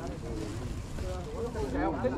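Indistinct voices of people talking in the background, with a low wind rumble on the microphone.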